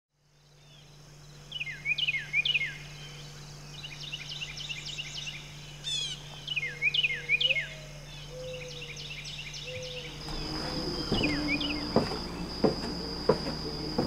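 Outdoor evening ambience: birds calling in repeated short sweeping phrases and chirp trains, with a steady high insect tone coming in about two-thirds of the way through. A few sharp knocks sound near the end.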